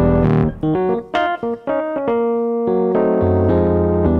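Roland electronic keyboard playing piano chords, several short struck chords in the first two seconds, then longer held chords.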